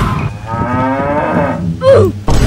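A long, drawn-out animal-like call whose pitch rises slowly, followed near the end by a short, loud swooping sound.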